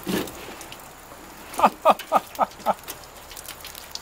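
A man's short laugh: five quick syllables, each dropping in pitch, over a faint steady wash of running water.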